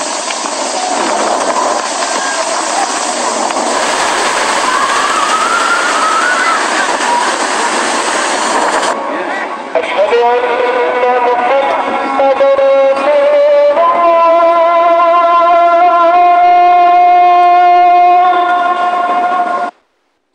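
Storm wind noise, a loud even rush, for about the first nine seconds. After a sudden change, long held horn-like tones follow, stepping between a few pitches and stopping abruptly just before the end.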